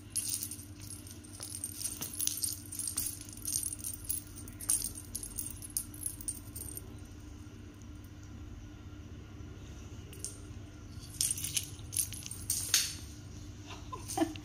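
Small metal bell on a feathered toy mouse jingling in short, scattered shakes as the toy is jiggled on its string and batted, with a quieter stretch in the middle.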